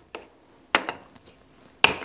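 Two sharp knocks about a second apart, things handled and set down on a wooden workbench, with a faint click just before them.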